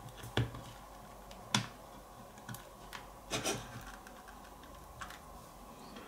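Scattered sharp clicks and light scraping from handling and prying at the glued housing of a portable Bluetooth speaker, about six clicks spread unevenly, two of them close together a little past the middle.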